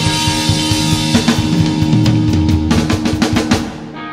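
Rock band playing live with a full drum kit, ending a song: a drum fill of rapid drum and cymbal hits in the second half, after which the music breaks off near the end.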